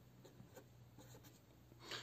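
Faint scratching of a felt-tip pen on paper as a number is written and an arrow drawn, in short strokes.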